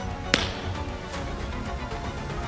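A single sharp pop of a pitched baseball hitting a catcher's mitt, about a third of a second in, over background music.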